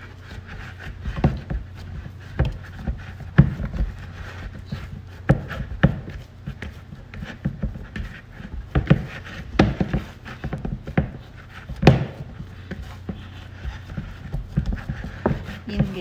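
Bread dough being kneaded by hand in a plastic mixing bowl: irregular dull thumps as the dough is pushed and pressed against the bowl, about one or two a second, over a steady low hum.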